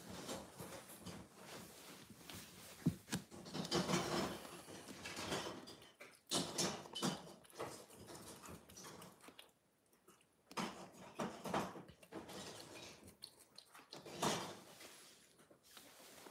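Cat licking a creamy lickable treat from a squeeze pouch held to its mouth: irregular wet licks and mouth sounds in short spells, with a brief pause about ten seconds in.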